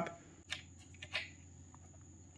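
A few faint, short ticks in the first two seconds from an Allen key being fitted into a hex screw head and turned, snugging up the screw.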